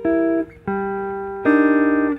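Guitar comping jazz chords: three chords struck about two thirds of a second apart, each left to ring, moving from G minor 6 to C minor 9. Only one note changes between the two voicings.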